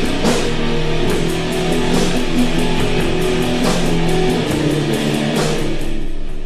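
Sludgy stoner-rock music from a one-man band: slow, distorted electric guitar chords over drums, with steady cymbal strokes and a few louder crashes.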